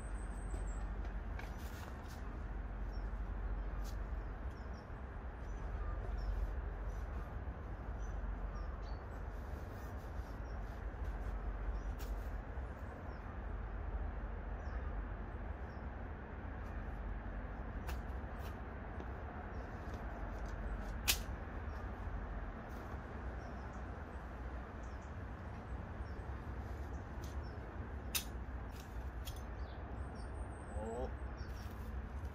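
Camping gear being handled and unpacked from a rucksack onto leaf litter: scattered rustles, clicks and light knocks, one sharper click about two-thirds of the way through, over a steady low rumble. A faint bird chirp comes near the start.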